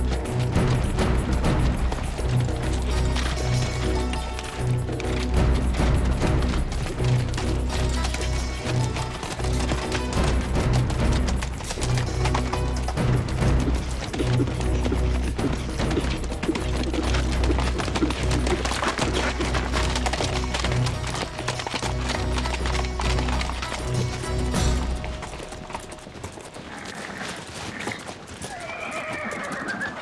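A group of horses ridden along a dirt track, hooves clip-clopping, under dramatic score music with a pulsing low drum beat. The music fades away near the end, and a horse whinnies.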